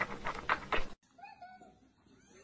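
Domestic cats: a quick run of short, noisy sounds for about the first second, cut off suddenly, then a faint, thin kitten mew.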